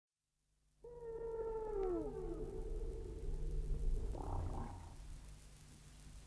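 Recorded whale song: a long moan with overtones that holds one note, then glides downward, followed by a shorter, rougher call about four seconds in. A steady low hum runs underneath.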